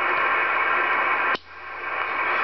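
Cobra 2000GTL CB base station receiver hissing with open-channel static through its speaker. The static cuts off with a click about one and a half seconds in, then swells back up.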